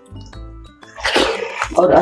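Faint background music, then about a second in a short, loud, breathy burst from a person lasting under a second, followed by the start of speech.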